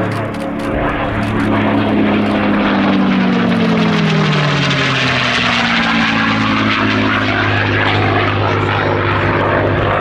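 P-51D Mustang's Packard Merlin V-12 engine and propeller at full display power in flight. The engine note drops in pitch between about two and five seconds in as the aircraft passes, then holds steady.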